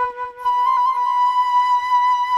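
Solo improvised flute. A held low note leaps up an octave about half a second in, and the higher note is then held steady.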